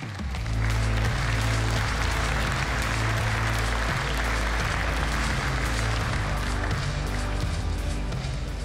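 Walk-on music with a steady bass line, under applause from a large seated audience. Both come up within the first second and hold steady, easing slightly near the end.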